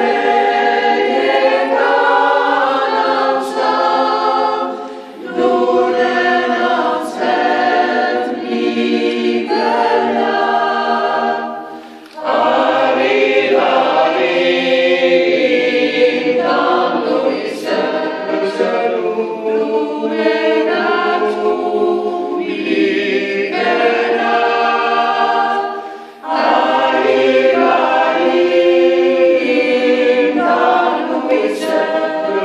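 Small mixed group of women and men singing an Armenian song a cappella in a stone-vaulted church, in long phrases with three short pauses between them.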